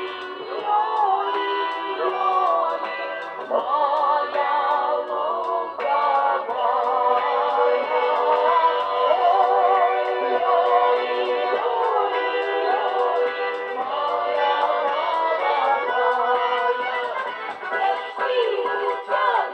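A folk ensemble performing a Russian folk song live through a PA: women's voices sing the melody with vibrato over balalaika and accordion accompaniment.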